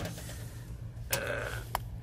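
Steady low hum of a running rooftop HVAC package unit, heard from inside its return duct elbow, with a short click near the end.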